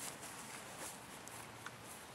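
Faint open-air background noise with a few soft ticks about a second apart.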